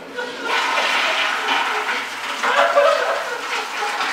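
Commercial toilet with a chrome flushometer valve flushing: a loud rush of water that starts about half a second in.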